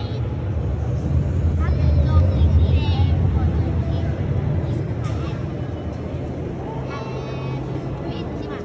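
Station concourse ambience: a steady low rumble that swells about two to three seconds in and then eases, with scattered voices of people around.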